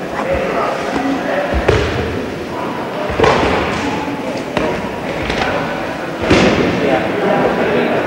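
Three dull thumps of a body against the training mat as a partner, pinned in a wrist lock, is worked on the floor, with low voices murmuring around.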